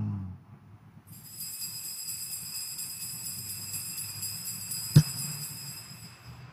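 Altar bells ringing at the elevation of the chalice after the consecration, a steady bright ringing of several high tones that starts about a second in and holds on. A single sharp click about five seconds in.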